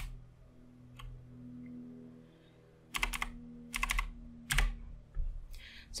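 Computer keyboard keys pressed a handful of times, sharp clicks in small clusters about three seconds in and again around four to four and a half seconds, over a faint steady low hum.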